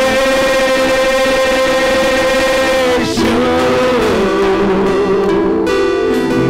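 Live church worship music: singers with guitar and keyboard accompaniment, a long note held for about three seconds before the tune moves on.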